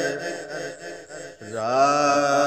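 A man singing a Punjabi Sufi kalam in a chant-like style. One phrase trails off, there is a short breath gap just under a second and a half in, then a new phrase rises in on a long held note.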